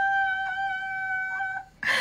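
A woman's high-pitched squeal, held on one steady note, ending with a short breathy burst near the end.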